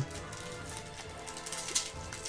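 Quiet background music with a light crinkling of a foil booster pack wrapper being gripped and twisted, the pack resisting being torn open.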